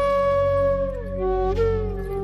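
Flute playing a slow melody over a low steady drone: a held note slides down about halfway through, then a new note begins.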